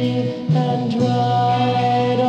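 Instrumental bars of a 1967 garage-rock ballad between sung lines: the band holds sustained chords, which change about half a second in.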